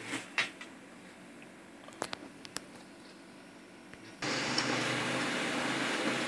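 Konica Minolta PagePro 1500W laser printer starting a test print: after a few faint clicks, its motor and fan start abruptly about four seconds in with a steady whirr as the page begins to feed.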